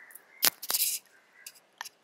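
Handling noise on an earphone cable's in-line microphone: a sharp click about half a second in, a short scratchy rustle, then a few faint ticks as the cable and mic are touched.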